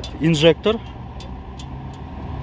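Motor vehicle engine idling with a steady low hum, under a few spoken words at the start.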